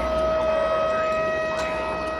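A steady siren-like warning tone held at one pitch, a sound effect in a radio show's produced bumper.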